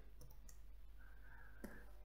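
A few faint computer keyboard keystrokes, single clicks spread through an otherwise near-silent room.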